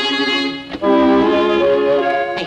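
Orchestral cartoon score led by violins, holding a chord. It breaks off briefly just before a second in, then comes back on a new, fuller held chord.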